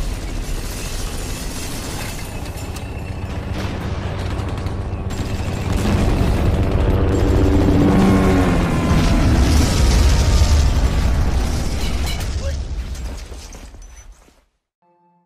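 Loud cinematic sound-effects mix of deep rumbling booms and mechanical noise, with pitched tones gliding downward in the middle, fading out near the end.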